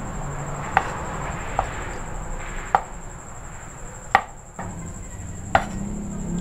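Cleaver chopping squid balls on a wooden cutting board: five sharp knocks of the blade striking the board, irregularly spaced about a second apart, over steady background noise.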